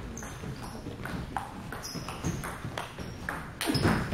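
Table tennis doubles rally: the ball clicking off bats and table in a quick, uneven series, about two hits a second, with a louder, noisier stretch near the end.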